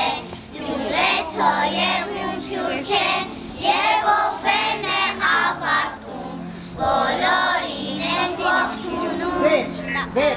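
A group of young children singing a song together in unison, over an instrumental backing with steady bass notes that change every second or two.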